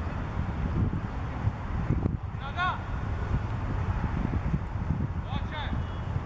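Steady low wind rumble on the microphone, with two brief distant calls from a voice, about two seconds in and again near the end.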